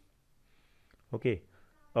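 A pause in a man's narration, mostly quiet room tone, broken by a single drawn-out spoken "okay" about a second in.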